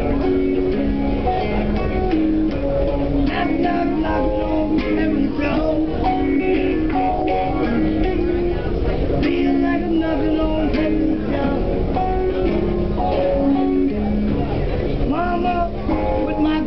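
Electric guitar playing a continuous run of picked and strummed notes.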